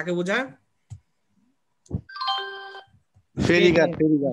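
Electronic chime of several steady tones sounding together for under a second, about two seconds in.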